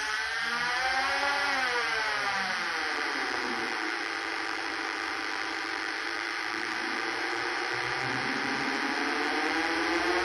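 Box of Beezz drone synth: six transistor-and-capacitor oscillators droning together through its built-in speaker. The pitch of the drone rises over the first second and a half, falls back, holds, and begins rising again near the end as the master tune knob is turned.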